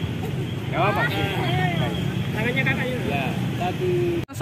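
Bystanders' voices talking in short snatches over a steady low rumble of street background noise.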